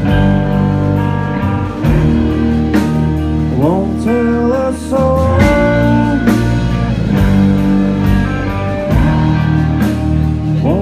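A rock band playing loudly live, with electric guitar and bass guitar, singing, and sustained and sliding notes.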